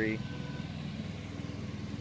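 A 1985 Honda ATC 250SX three-wheeler's single-cylinder four-stroke engine idling steadily, with an even, fast low pulse. The engine runs, though it was not running when the bike was acquired.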